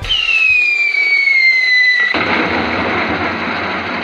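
Firework whistle falling in pitch for about two seconds, then a sudden loud burst of rushing noise from the firework that carries on.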